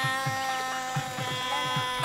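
Background cartoon score: long held notes over a quick, low drum pattern.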